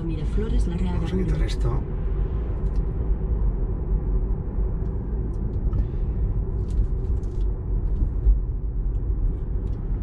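Steady low road and tyre rumble inside the cabin of a moving car, with a man's voice briefly at the start.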